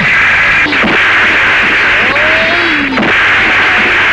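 Dubbed fight-scene sound effects: a couple of sharp punch hits and a short shout over a loud steady hiss.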